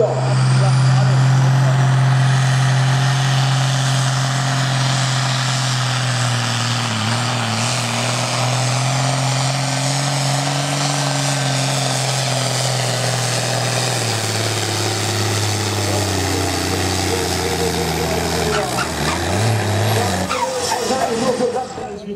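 Oliver 1955 tractor's diesel engine at full throttle, pulling a weight-transfer sled. It holds a steady, high pitch at first, then its revs sag partway through and drop further near the end as the engine bogs down under the load.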